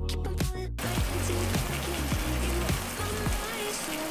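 Background music with a steady beat, and from about a second in a steady sizzling and bubbling: marinated beef short ribs cooking in their sweet soy marinade in a frying pan.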